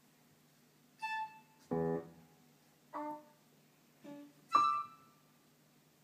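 Jazz orchestra playing a sparse passage of five short, separated notes with quiet gaps between them; one note, near the middle, sits much lower than the others.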